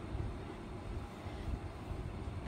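Steady low background rumble with a faint hiss.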